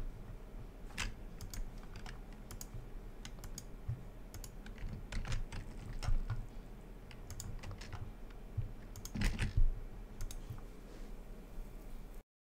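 Computer keyboard typing: scattered key clicks, with a quick run of louder strokes about nine seconds in, over a faint steady low hum.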